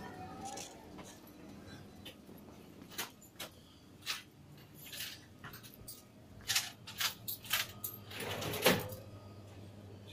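Faint scattered clicks and clinks of small objects being handled in a shop. A low steady hum comes in about seven seconds in, and there is a brief louder rustle near the end.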